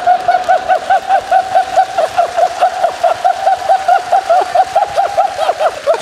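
A single person's long, high-pitched laugh on one steady pitch, chopped into quick, even 'hee-hee' pulses of about six a second: a deliberately silly laugh, called a 'дебильный смех' (idiotic laugh).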